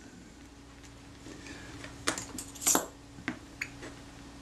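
A few light metallic clicks and ticks, mostly in the second half, as steel tweezers handle a small pin against a metal camera mount ring. A faint steady hum runs underneath.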